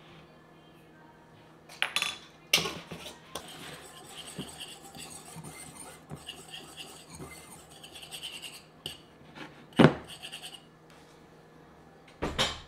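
Small metal whisk stirring dry flour mixture in a glass bowl: a run of quick, light clinking and scraping, preceded by a few sharp clicks of jars and measuring spoons. One sharp clink stands out about ten seconds in.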